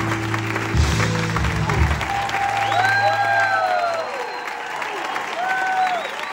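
A live rock band ends a song with a few closing hits and a held low note that fades out about four seconds in, as the audience applauds with cheers and whistles.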